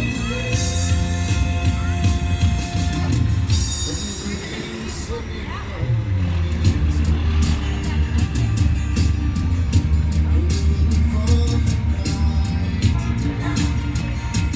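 Live band music: a man singing with an acoustic guitar, backed by an electronic drum kit keeping a steady beat that becomes fuller about six seconds in.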